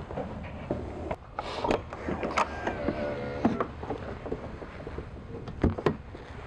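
A small electric motor on a motorhome runs with a steady low whirr, with scattered clicks and knocks over it, the sharpest near the end.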